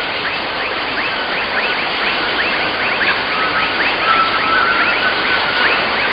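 Tropical forest ambience: a steady hiss with a short rising chirp repeated about three times a second.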